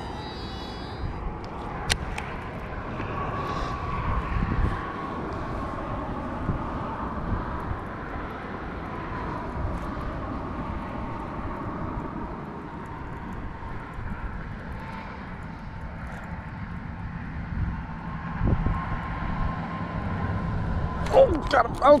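A steady, distant engine drone with a faint wavering tone, with a single sharp click about two seconds in. A man's voice comes in right at the end.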